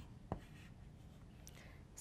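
Faint chalk on a blackboard: a short tap about a third of a second in, then a few light scratches as a number is written.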